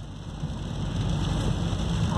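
Steady low road-and-engine rumble inside the cabin of a moving car.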